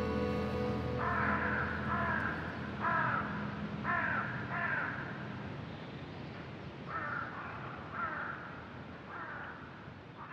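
A series of short bird calls, about one a second, five in a row and then four more after a short pause, as the last sustained tones of a music track fade out.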